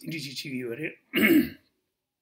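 A man's voice speaking a few syllables, then one loud, short throat clearing about a second in.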